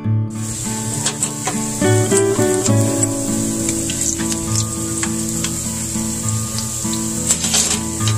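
Hot oil sizzling steadily as a folded tortilla fries in a small pan, with a few light clicks near the end. Acoustic guitar music plays throughout.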